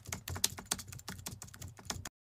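Computer keyboard typing sound effect: a quick, irregular run of keystroke clicks accompanying text being typed out letter by letter on screen.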